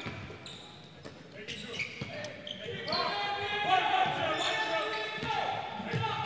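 Basketball being dribbled on a hardwood court, echoing in a large, mostly empty gym. From about halfway through, players' voices call out over it.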